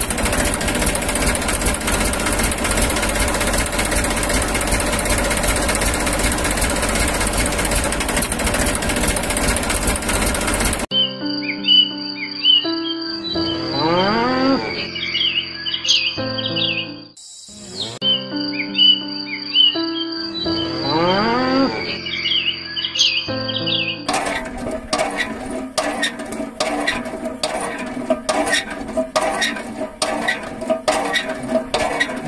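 A dense, steady mechanical rattle for about the first eleven seconds. Then a passage of chirps and rising whistles over held tones plays twice, with a short break between. In the last six seconds come quick, fairly even clicks.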